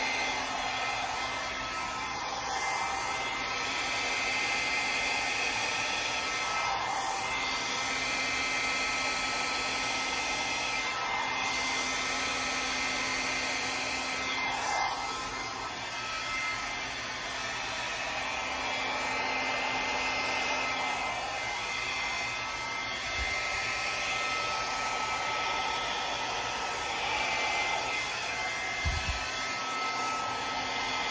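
Handheld blow dryer running continuously, a rush of air with a steady whine, blowing wet acrylic paint across a canvas to spread the colours into petals. The sound swells and dips a little as the dryer is moved over the painting.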